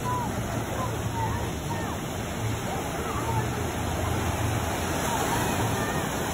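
Small waves breaking and washing up a sandy shore in shallow surf, a steady rush of water, with faint voices in the background.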